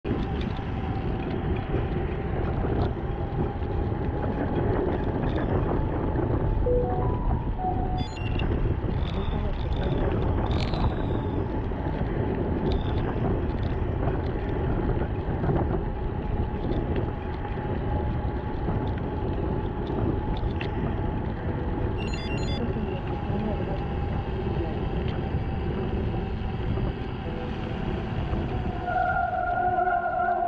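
Wind rushing over an action camera's microphone, with bicycle tyres rolling on a wet paved path, as a gravel bike is ridden at a steady pace. A steady higher tone comes in over the noise near the end.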